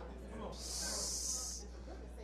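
A steady high hiss lasting about a second, starting and stopping abruptly, with faint murmuring underneath.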